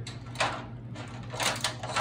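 Graham crackers set down in a thin disposable aluminium foil pan: a few light taps and crinkles of the foil, one about half a second in and a small cluster near the end.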